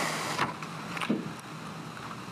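Paper rustling as sheets of a report are handled close to a microphone: one longer rustle at the start and a short one about a second in, over a steady low room hum.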